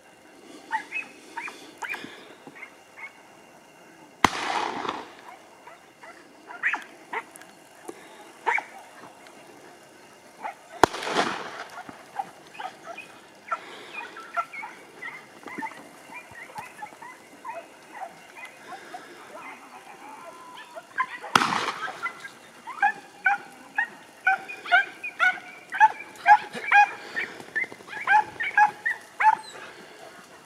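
Podenco hounds yelping: scattered high yips that build near the end into a rapid, excited string of yelps. This is the cry of hounds working a rabbit in cover. Three short bursts of noise break in about four, eleven and twenty-one seconds in.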